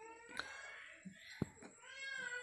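Two faint, drawn-out high-pitched cries that rise in pitch, one at the start and one near the end, with a couple of light clicks between them.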